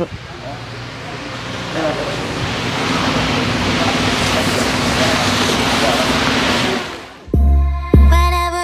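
A rushing noise that swells over the first few seconds, holds steady, then fades, followed near the end by music with a heavy bass beat.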